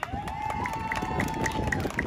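A single held tone lasting nearly two seconds, with a slight rise and fall, over outdoor crowd noise. A quick series of faint high beeps, about four a second, joins it about half a second in.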